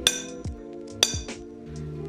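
Hammer striking a center punch against a steel bar twice, about a second apart, each blow a sharp metallic clink with a brief ring, marking the hole centers for drilling.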